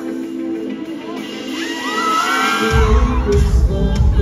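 Live band playing a pop song's intro through a concert PA in a large hall: held keyboard chords at first, then the bass and drums come in about two-thirds of the way through and the music gets louder, with the crowd cheering.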